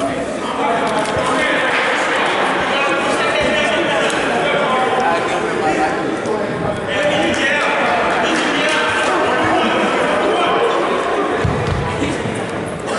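Indistinct voices of people talking, echoing in a large gymnasium, with no clear words. A dull low thump comes near the end.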